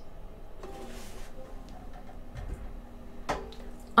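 Faint handling noise of a ukulele being lowered and put aside: scattered soft taps and ticks, with one sharper click a little over three seconds in.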